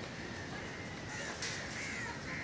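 Birds calling, short repeated calls with a louder one about halfway through, over steady background noise.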